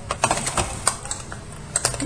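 Light clicks and knocks of small plastic makeup items being handled and set down on a desk. There is a quick cluster right at the start, one sharp click near the middle and a close pair near the end.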